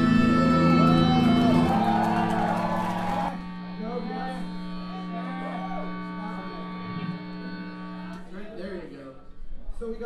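A live ska-punk band with horns (saxophone, trumpets, trombone) and guitar ends a song on a loud held chord that breaks off about three seconds in. A note rings on under shouts and whoops from the crowd.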